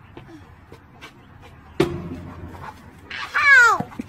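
A sharp knock about two seconds in, then a loud, high-pitched cry that falls in pitch over under a second near the end.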